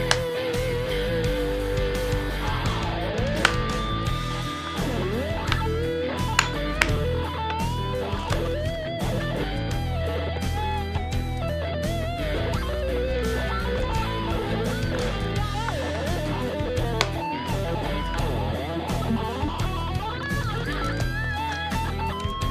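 Electric guitar solo over a backing track with bass. It opens on a held note with vibrato, then plays bending melodic lines.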